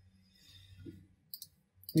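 A pause in a man's speech: a faint spoken 'I', then two short clicks a little past halfway, then talk starts again at the very end.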